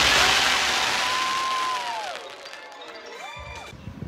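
Daytime fireworks fired from a castle stage show: a sudden loud rushing hiss that fades over about two seconds. Show music with long held notes runs underneath, and the notes slide down near the middle and again near the end.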